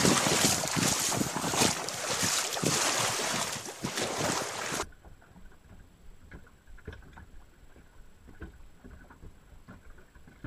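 Wind buffeting the microphone, a loud rushing noise that cuts off abruptly about five seconds in. The rest is quiet, with faint scattered clicks and knocks.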